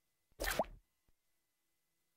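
Short cartoon sound effect on the studio logo: a single pop with a quick upward pitch glide, about half a second long, followed by a faint click.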